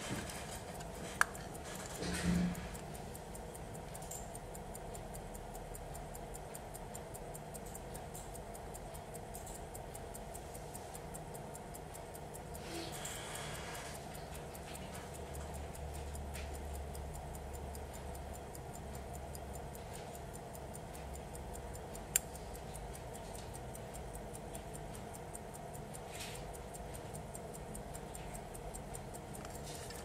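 Ticking of a 1913 Omega pocket watch movement, a rapid, even tick running on. A few louder sharp clicks, one about a second in, a knock just after two seconds, and another around 22 seconds.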